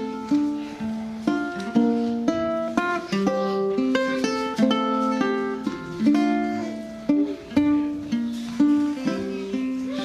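Solo ukulele played live as a song's instrumental intro: a steady run of individually plucked notes and chords, each ringing on briefly.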